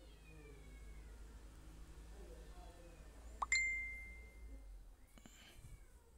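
A single bright ding about halfway through: a sudden clear ringing tone that fades away over about a second. A low steady hum runs under it.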